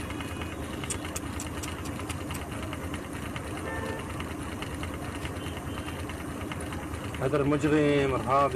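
A vehicle engine idling steadily, heard from inside the cab; a man's shouting voice breaks in near the end.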